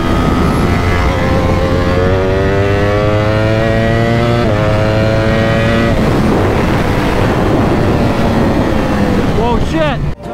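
Ducati Panigale V4 engine accelerating hard, heard onboard with wind rush. The pitch climbs through a gear, drops at an upshift about four and a half seconds in and climbs again. The throttle closes about six seconds in and the engine note falls away as the bike slows.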